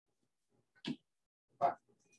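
Two short spoken words, "same?" and "five", with complete silence around them, as if from a noise-gated call microphone.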